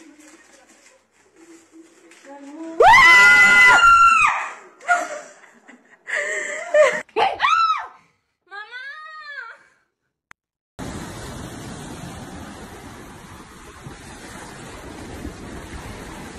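A woman's loud, startled scream held for over a second, followed by shorter cries. About eleven seconds in, the sound cuts to a steady rush of surf and wind.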